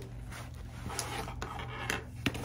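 Soft handling noises of things being moved about on a table: faint rubbing with a few light clicks and taps.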